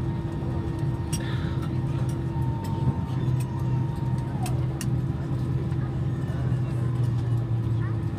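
Airliner cabin noise as the plane taxis slowly to the gate: a steady hum from the idling engines and the cabin air system. A higher steady tone drops in pitch about four and a half seconds in, and faint light clicks are scattered throughout.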